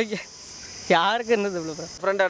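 Steady high-pitched chirring of insects. A voice speaks over it from about a second in, briefly louder than the chirring.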